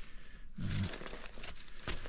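Dry leaves and twigs crackling and rustling on the ground: scattered irregular clicks, as from movement over dry debris.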